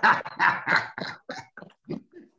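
A man laughing: a string of short 'ha' bursts, about four a second, fading out toward the end.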